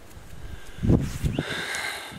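Close handling noise from a dead stick and nylon snare string being worked by hand: a dull thump about a second in, a couple of lighter knocks, then rustling and scraping near the end.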